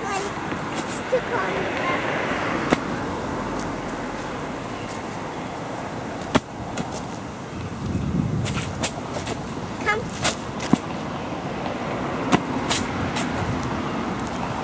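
A clear inflatable beach ball being kicked around on concrete: a handful of sharp, light slaps scattered through, over a steady outdoor background rumble.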